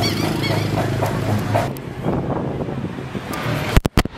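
Street traffic: passing cars and motorbikes hum and rush, through a faulty camera microphone that adds a wind-like noise. A sharp click and a brief dropout come just before the end.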